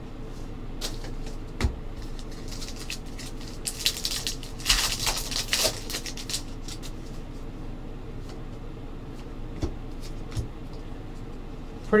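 Hands tearing open a foil trading-card pack, with a denser stretch of crinkling wrapper about four to six seconds in. Scattered light clicks and rustles come from cards being handled and slid apart.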